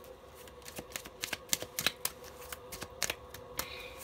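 A deck of cards shuffled by hand, giving a run of quick, irregular card clicks and flicks.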